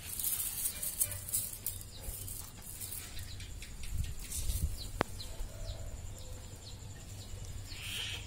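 Outdoor background sounds: a distant animal call, many short faint chirps over a low steady rumble, and one sharp click about five seconds in.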